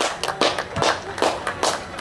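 One person clapping close to the microphone, about two to three even claps a second, applauding a goal.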